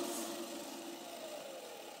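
Sky King toy RC helicopter's electric motor and rotor spinning down: a whine that falls slowly in pitch and fades.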